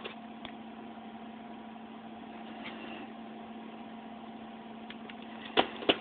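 Steady low machine hum with a constant tone, and a few soft clicks and a sharper knock about five and a half seconds in as plastic VHS tape cases are handled.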